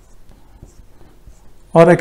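Marker pen writing on a whiteboard: faint, irregular scratches and taps of the felt tip as figures are written.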